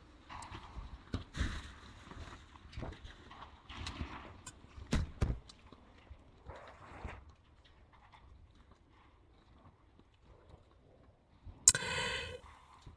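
Debris from the crashed SpaceX Starship SN11 falling and striking the ground around a pad camera, heard through the camera's microphone as scattered knocks and thuds. They come irregularly for about seven seconds, then die away to a faint background.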